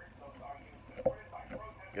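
Screwdriver working the small screws out of a hard plastic knife sheath: quiet scraping and handling of the plastic, with one sharper click about halfway through. Faint muttering underneath.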